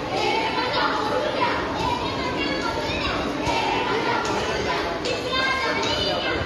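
A group of children's voices, overlapping and continuous.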